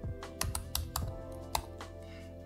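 Computer keyboard typing, about half a dozen separate keystrokes, over soft background music with steady held tones.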